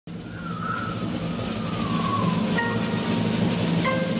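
Cartoon wind howling down an empty street, a whistling tone sliding slowly down in pitch over a low rumble, with two short bell-like rings about a second and a half apart near the end.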